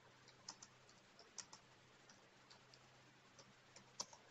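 Near silence, with faint, irregular light clicks, a few a second, over a low steady hum.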